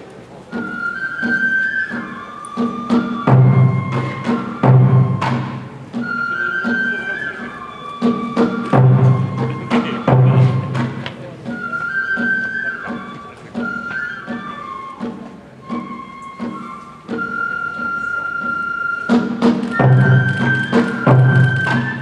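Kagura accompaniment: a transverse bamboo flute playing a stepping melody over heavy drum strokes spaced a second or more apart, with sharper strikes between them.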